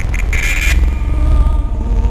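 Experimental industrial electronic music: a heavy, deep bass drone runs throughout, with a thin wavering tone above it and a short burst of hissing noise about half a second in.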